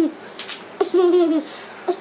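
A toddler laughing in high-pitched, drawn-out giggles, one long burst in the middle and another beginning near the end.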